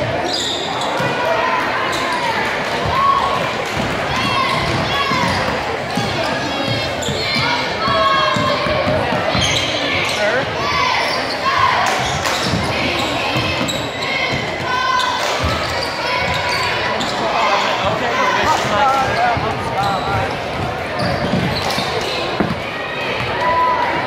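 Basketball game in a gymnasium: a ball bouncing on the hardwood court amid many overlapping crowd and player voices, echoing in the large hall.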